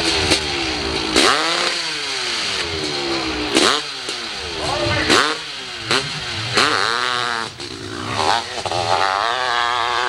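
Dirt bike engine revved in a series of sharp throttle bursts, each falling away and coming back, about six in all; near the end it is held at high revs as the bike launches up the hill.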